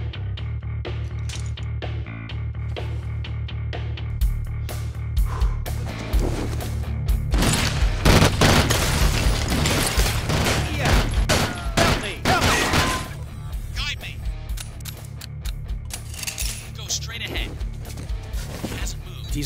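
Action film soundtrack: a steady rhythmic score, then from about four seconds in a long spell of rapid gunfire and hits layered over the music, easing off after about thirteen seconds.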